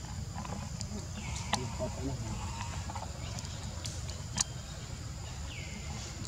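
Forest ambience: a steady low rumble under a thin, steady high drone, with two short chirps that fall in pitch and a few sharp clicks.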